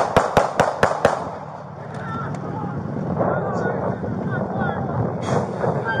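A rapid volley of about six handgun shots fired by police within the first second, as picked up by a body-worn camera. After that comes a steady rush of outdoor noise.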